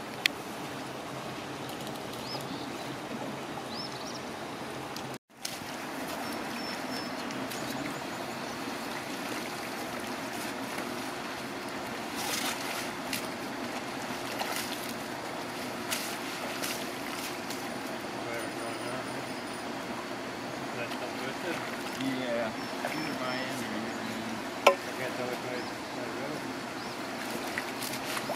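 Water sloshing around waders as people wade through a shallow pond handling a seine net, over a steady rush of running water, with a sharp knock near the end.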